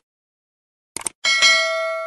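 Short click sounds about a second in, then a bright bell chime struck once that rings out slowly: the subscribe-click and notification-bell sound effect of a YouTube subscribe-button animation.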